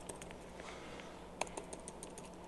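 Faint, scattered keystrokes on a laptop keyboard, a handful of separate clicks with one louder key press about one and a half seconds in.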